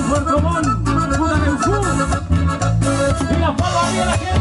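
Live Latin dance band playing an instrumental passage: bass and drums keep a steady beat of repeated low notes about twice a second under a moving melody line.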